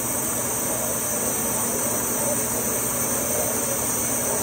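OMAX ProtoMax abrasive waterjet cutting steel plate: a steady, high-pitched hiss from the jet with a steady low hum beneath.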